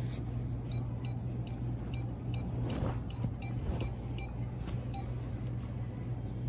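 Steady low hum of a store's interior, with two runs of short, high-pitched chirps, a few a second: one run about a second in and another near the end.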